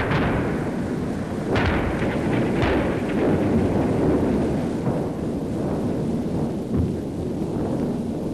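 Artillery fire: three or four heavy gun reports within the first three seconds, each dying away in a rolling echo, over a continuous low rumble.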